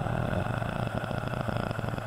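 A man's drawn-out, creaky "uhhh" of hesitation: one steady, low, buzzing vowel held without a break.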